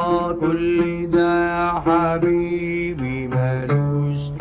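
Arabic song: a male singer draws out long, melismatic notes over plucked oud accompaniment.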